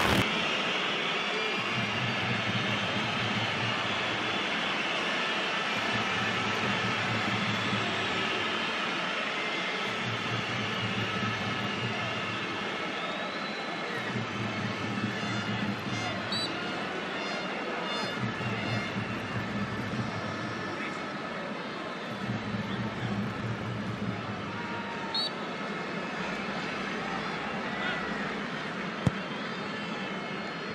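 Steady open-air noise at a football pitch, with faint distant voices and a low rumble that swells and fades every few seconds. A single sharp thump comes near the end.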